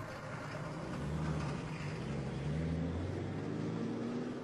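A vehicle engine running with a low, steady rumble and hum.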